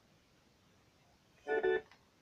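Near silence, then about one and a half seconds in a short steady musical note, held level in pitch and lasting about a third of a second in two brief parts.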